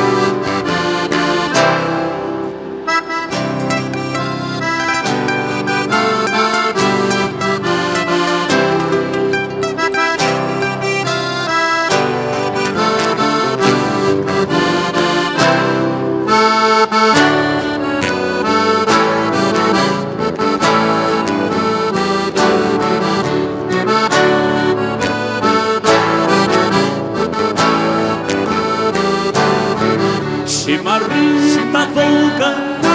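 Live gaúcho folk dance music, an instrumental passage led by accordion with band accompaniment and a steady beat.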